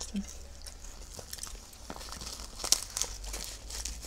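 Dry, crisp nori seaweed sheet crinkling and crackling as it is folded and rolled by hand, with many small sharp crackles and one louder snap a little before three seconds in.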